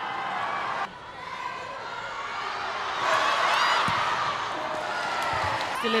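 Stadium crowd noise at a football match, with scattered shouts. It breaks off abruptly about a second in and then swells, loudest around three to four seconds in.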